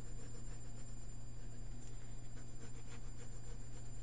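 Faint scratching of a pencil drawing straight lines across grid paper, over a steady low hum.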